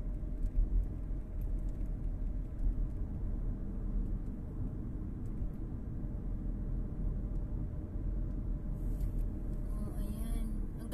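A car being driven at steady speed, heard from inside the cabin: a low, steady rumble of road and engine noise with a faint steady hum.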